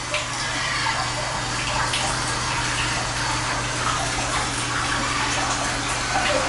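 A steady rushing noise like running water, over a low steady hum.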